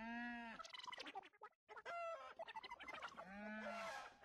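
Squeaky cartoon character voices of animated creatures chattering in nonsense sounds. A long rising-then-falling call comes at the start and another near the end, with quick chattering between.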